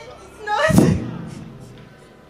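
A single heavy thud about half a second in, typical of a handheld microphone being knocked or handled, preceded by a brief voice sound and dying away over about a second.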